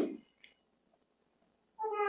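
Mostly quiet, apart from the tail of a man's word at the very start. Near the end comes one short, high-pitched cry of about half a second, from a small child or an animal.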